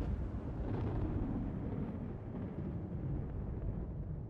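Low, rumbling drone of horror-film sound design under a title card, the drawn-out tail of a deep boom, slowly dying away.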